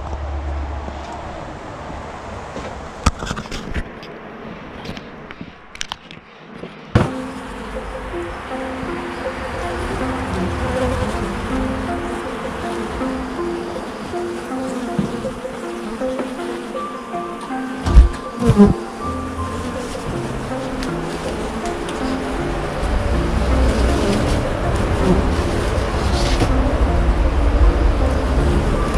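Honey bees buzzing around open hives. Background music with a stepping melody comes in about a quarter of the way through and runs under the buzzing.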